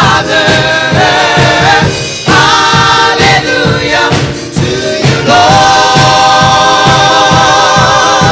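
Gospel choir singing through microphones over a steady beat, settling into a long held chord about five seconds in.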